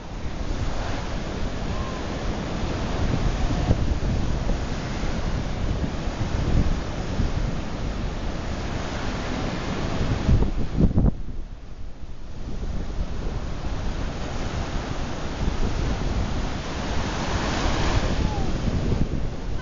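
Sea surf washing onto a sandy beach, a steady rushing hiss, with wind buffeting the microphone in a low rumble. The hiss dips briefly about eleven seconds in.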